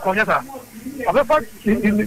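Speech only: a woman talking in a local language, with two short pauses.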